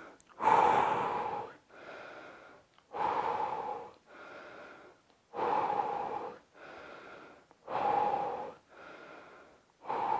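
A man breathing deeply and steadily through a held wall sit: four louder breaths, each followed by a softer one, about one full breath every two and a half seconds.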